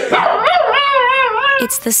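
A dog howling: one long, wavering howl that rises and falls in pitch for about a second, with the backing music dropped out. A voice starts singing right at the end.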